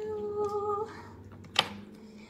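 A woman's voice humming a held note, then a lower held note after a short sharp click about one and a half seconds in.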